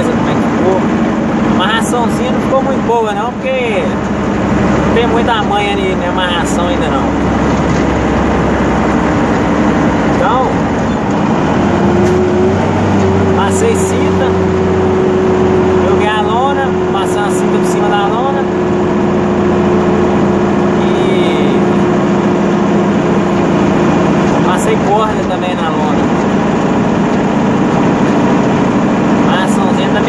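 Six-cylinder diesel engine of a Mercedes-Benz 1113 truck running at road speed, heard from inside the cab. Its note shifts upward about a third of the way in, then holds steady.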